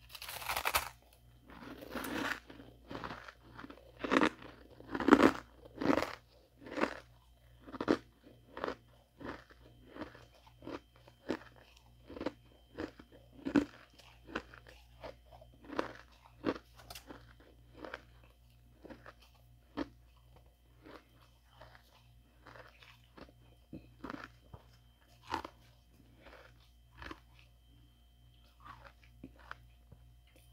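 Ice being bitten and chewed close to the microphone: a loud crunching bite at the start, then a long run of crunching chews, about one to two a second, growing gradually softer.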